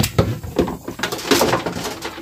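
Plastic lid of a 20-gallon Rubbermaid Roughneck trash can being opened, with a sharp knock at the start and then scraping and rattling of the plastic.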